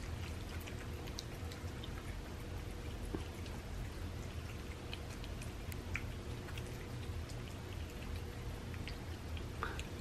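Several cats eating soft homemade raw food from paper plates: faint, scattered small chewing and licking clicks over a steady low hum.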